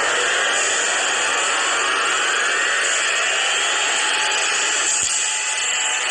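A loud rushing hiss like a jet engine, with faint tones rising slowly in pitch over about five seconds: a swelling whoosh sound effect between music cues. There is a single short thump about five seconds in.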